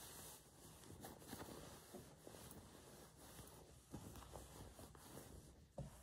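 Near silence, with faint rustling of calico cloth as the stuffed body of a fabric soft toy is handled.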